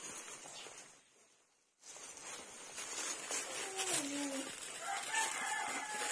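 Rooster crowing in the second half: drawn-out calls that glide in pitch and hold a high note near the end, over faint outdoor background.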